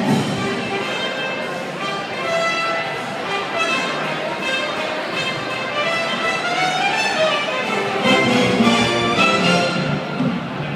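Live band music playing, with held melody notes over a steady accompaniment.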